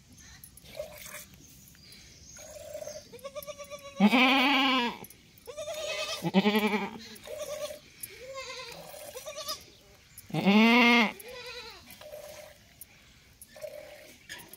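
Goats bleating: three loud, drawn-out bleats about four, six and ten seconds in, with shorter, softer bleats between them.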